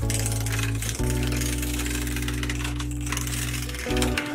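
Background music with held chords that change about a second in and again near the end, over the rattly scraping of a turning gouge cutting into an uneven root blank spinning on a wood lathe.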